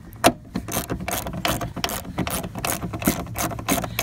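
Small hand ratchet clicking in quick runs as it drives an M8 steel bolt into a Jeep Cherokee door hinge, with one louder click near the start.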